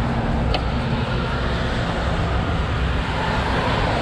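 Steady road noise of traffic passing on the highway.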